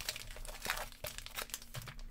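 Foil trading card pack wrappers crinkling as they are handled and shuffled in the hand, a run of small irregular crackles.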